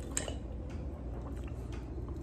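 Drinking from a lychee Ramune bottle: a few faint, scattered clicks and ticks over a low steady hum.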